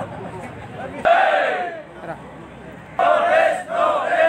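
A crowd of protesters shouting a slogan together over a background murmur: a loud shout about a second in and again near the end, the start of a repeated rhythmic chant.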